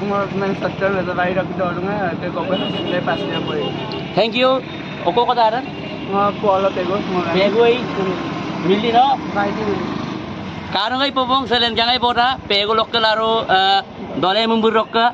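Men talking, over a steady background drone that drops away about eleven seconds in.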